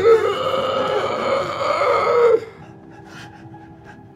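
A man's long, strained vocal cry, held steady for about two and a half seconds and then cut off abruptly. A faint low drone is left after it.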